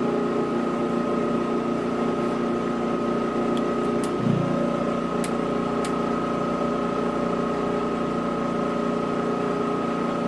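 Balzers HLT-160 helium leak detector and its Edwards ESDP-30 dry scroll pump running with a steady hum and a high whine, pumping down the test port. A short low thump comes about four seconds in, with a few faint clicks around it.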